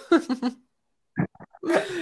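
Short bursts of laughter over a video call, broken by a stretch of dead silence, with speech starting near the end.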